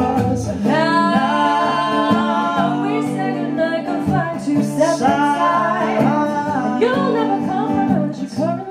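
Live song: a man sings long held notes with sliding pitch into a microphone, accompanied by an acoustic guitar.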